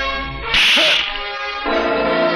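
Film background score holding sustained chords, cut across about half a second in by a loud, hissing swish effect that lasts about half a second. A new, fuller chord swells in near the end.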